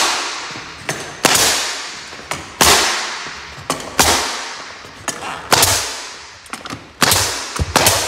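A nail gun firing nails into baseboard trim, about six shots roughly a second and a half apart. Each shot is a sharp bang followed by a hiss that fades out, with a lighter click between shots.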